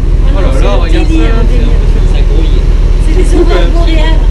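Loud steady low rumble of a ship under way at sea, with indistinct voices talking over it.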